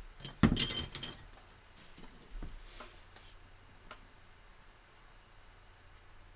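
A ceramic water mug and a metal watercolour palette tin being slid aside on a tabletop. There is a sharp knock about half a second in, then a few lighter clicks over the next few seconds.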